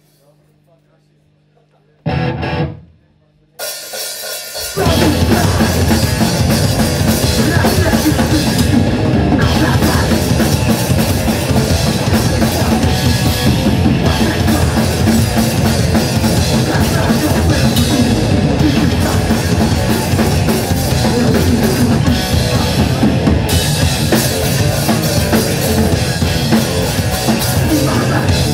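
Hardcore punk band playing live: after a low steady hum and a couple of short loud hits, the drums, guitars and bass come in together about five seconds in and play on loudly.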